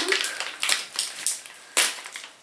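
Crinkling of a face-mask sachet's packaging as it is turned over in the hands: a few short, sharp crackles, the loudest near the end.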